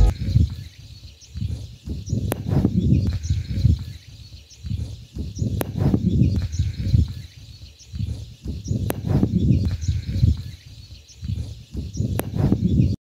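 Wind buffeting the microphone in irregular gusts, a low rumble that rises and falls, with a few faint bird chirps above it.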